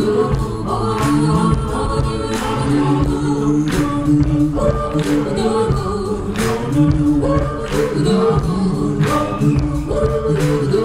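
Live band with several voices singing held harmonies together over guitars, keyboards and drums, with a drum hit landing about every second and a quarter.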